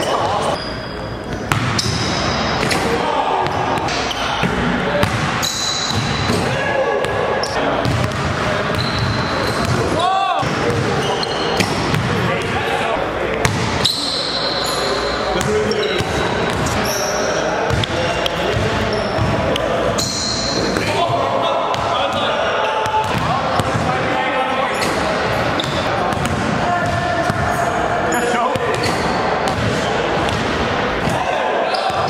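Basketballs bouncing on a hardwood gym floor and dunks on the rim, with players' voices and shouts, all echoing in a large gym.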